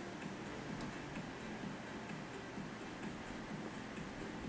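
Faint, regular ticking over a low background hum, with one slightly sharper tick about a second in.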